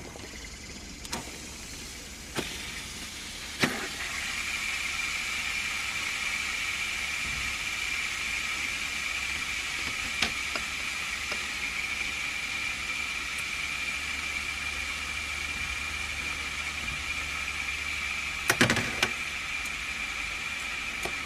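Several fidget spinners being flicked into motion, a few sharp clicks as they are set going, then a steady high-pitched whir from about four seconds in as they spin together. A cluster of clicks near the end as a spinner is touched by hand.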